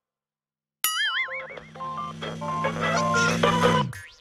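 Near silence for almost a second, then a springy cartoon 'boing' sound effect with a wavering pitch, followed by light cartoon background music that cuts off just before the end.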